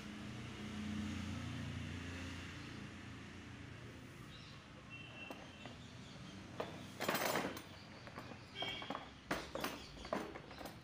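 Handling noises from a hammer drill and its moulded plastic carry case: a sharp click at the start, then scraping and knocking as the drill is moved in the case, loudest about seven seconds in and again near the end. A faint low hum runs underneath in the first few seconds.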